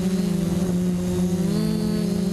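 Quadcopter's electric motors and propellers whining steadily, heard from the camera on board, with the pitch stepping up slightly near the end, over a low rumble.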